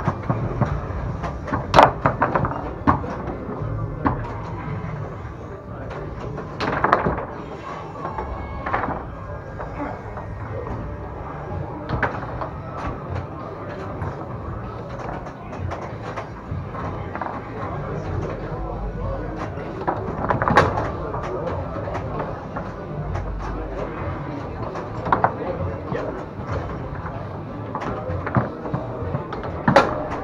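Foosball in play on a Tornado table: sharp, irregular knocks of the hard ball striking the plastic men and the table walls, with the rods clacking, and a few louder shots. Background voices run underneath.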